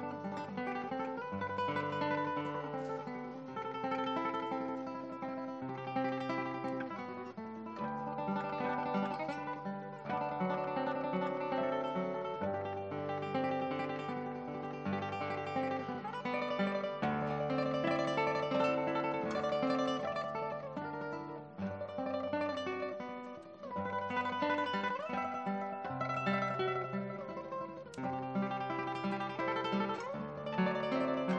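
Large guitar orchestra playing: many guitars plucking a dense, continuous passage, with bass notes that change every second or two under a busy upper line.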